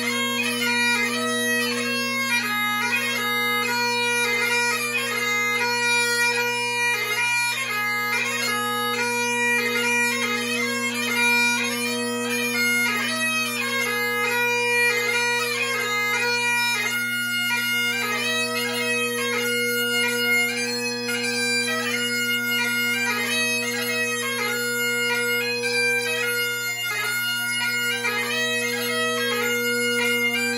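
Great Highland bagpipe played solo: the steady hum of the three drones under the chanter's ornamented melody, running without a break.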